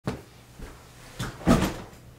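A few soft thumps and knocks from a person sitting down in an office chair, the loudest about one and a half seconds in.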